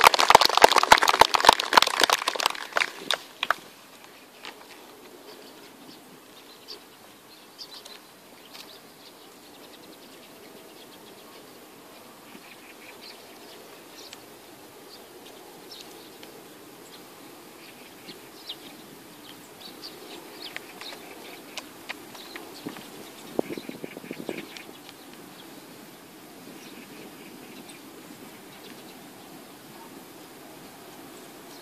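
Golf spectators applauding for about three and a half seconds, then a quiet outdoor hush with scattered faint bird chirps.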